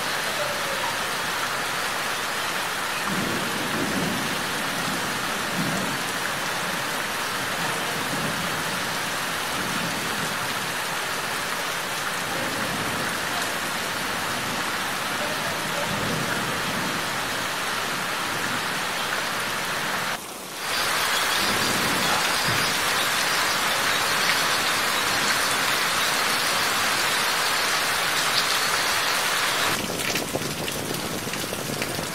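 Steady rain falling on mango leaves and the ground, with low rumbles now and then through the first part. About two-thirds of the way in the sound cuts out briefly, then returns as heavier, louder rain.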